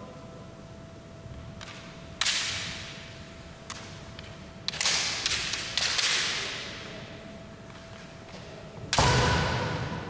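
Bamboo shinai striking and clashing in a kendo bout: sharp cracks about two seconds in, a flurry a few seconds later and the loudest near the end, each ringing on in the hall's echo.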